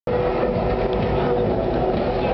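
A crowd of people talking at once over a steady low rumble, with a held mid-pitched tone that stops about three quarters of the way through.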